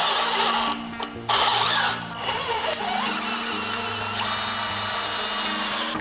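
Cordless drill with a square-drive bit running in several short runs, driving small screws into a railing post's base cover.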